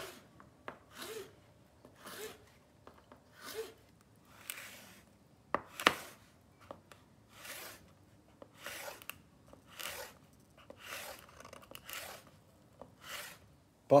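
Chef's knife slicing red peppers into thin strips on a plastic cutting board: a steady series of short, crisp cuts, one or two a second.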